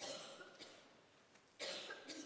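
Two coughs from people in the congregation, about a second and a half apart, over a quiet church.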